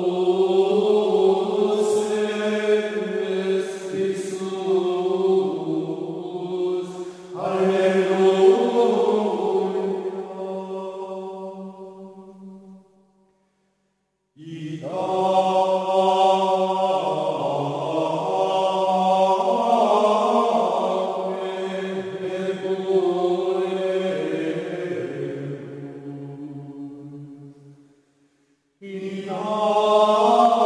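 Slow chanted singing in long, held phrases. One phrase fades out into a short silence about 13 seconds in, and another fades out near the end before the next begins.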